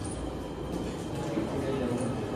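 Indistinct background voices over a steady low room rumble, with no single clear event.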